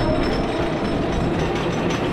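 Wooden roller coaster train running over its wooden track as it crests the lift hill and starts down, a steady rumble.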